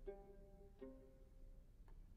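Very quiet viola pizzicato: two soft plucked notes about three-quarters of a second apart, each dying away, with a faint click near the end.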